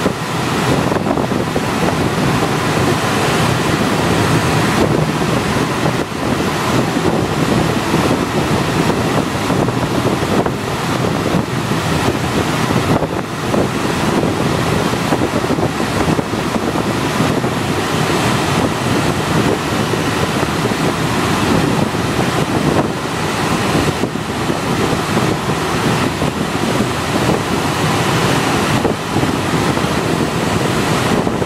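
Steady rush of air streaming past a glider's cockpit in flight, buffeting the microphone, with no engine.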